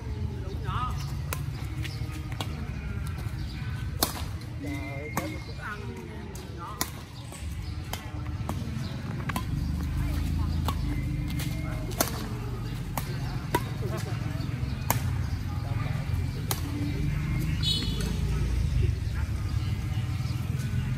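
Badminton rackets striking a shuttlecock in a rally: sharp pops every one to two seconds, some louder than others, over a steady low rumble of background noise.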